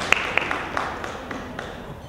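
Audience applause, a haze of scattered claps that thins out and dies away over the two seconds.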